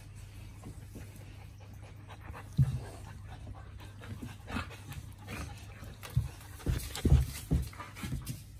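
Large dogs play-fighting: panting, with short grunts and bumps. The loudest comes about two and a half seconds in, and a cluster of them near the end.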